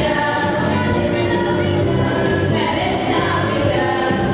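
Children's choir singing through stage microphones, holding long sung notes.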